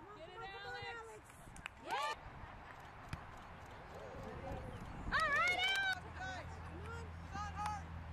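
Shouts and calls from players and spectators across a soccer field, several brief ones with the loudest about five seconds in. A low steady hum comes in about six seconds in.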